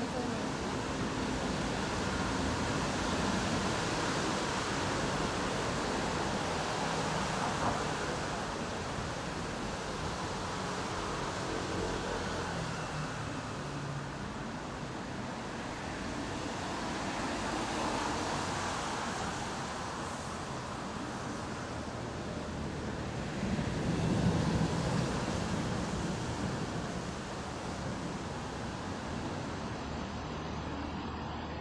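Steady rushing ambient noise of an open-air train station, swelling and easing a few times, with a louder swell about three-quarters of the way through.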